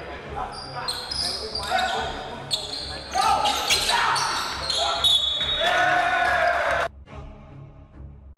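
Live sound of an indoor basketball game in a hall: players' shouts, the ball bouncing on the wooden court and short high squeaks from shoes. The sound drops suddenly to much quieter hall noise about seven seconds in.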